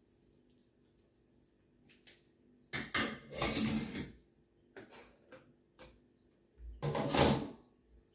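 Kitchenware being handled: a strainer of juiced pulp and a plastic bowl used as a funnel are lifted off a bottle and set down. The sound comes in two bouts, about three seconds in and about seven seconds in, with a few small knocks between. The second bout opens with a low thump.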